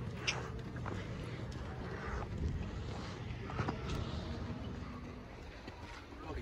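Steady low outdoor rumble with a few faint short knocks.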